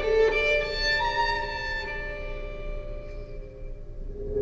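Background music of long held notes, each ringing with many overtones and slowly fading toward the end.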